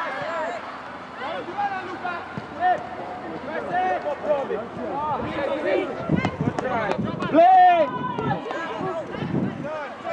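Players shouting and calling to one another across a football pitch, several distant voices overlapping, with no clear words. One loud, drawn-out shout about seven and a half seconds in is the loudest sound.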